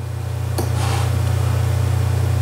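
A steady low hum, with a faint click about half a second in.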